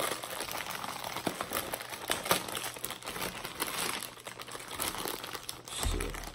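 Plastic marshmallow bag crinkling and crackling as it is pulled open and handled.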